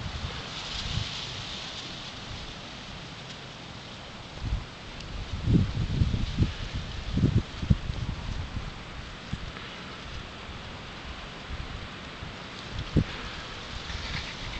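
Outdoor ambience: a steady hiss with irregular low rumbles and thumps on the camera microphone, heaviest around the middle and again briefly near the end.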